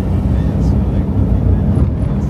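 Steady low rumble of a vehicle driving along a paved road, heard from on board.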